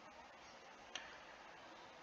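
Near silence: faint room tone, with a single faint click about a second in.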